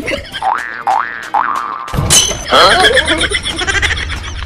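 Cartoon comedy sound effects: three quick rising whistle-like swoops, then, after an abrupt change about halfway, a wobbling boing over music.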